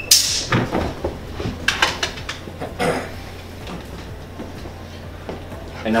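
A Pet Corrector can of compressed air sprayed once, a short loud hiss of air right at the start, used as a correction to break up two dogs' rough play. A few light knocks follow.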